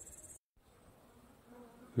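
Evening crickets chirring, a steady high-pitched buzz that cuts off abruptly less than half a second in, followed by near silence with faint hiss.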